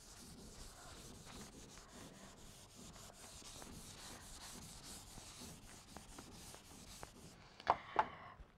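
Blackboard duster wiping chalk off a chalkboard: a faint, steady scrubbing. A short burst of a woman's voice comes just before the end.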